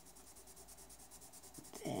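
Pencil shading on paper: rapid, even back-and-forth scratching strokes as the pencil is pressed hard to lay down a dark tone.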